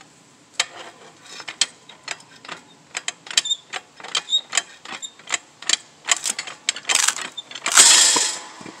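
Manual hydraulic log splitter being pumped by hand: a steady run of sharp clicks, about three a second, as the ram forces a green log against the wedge. Near the end the log gives way with a loud crack and rush as it splits.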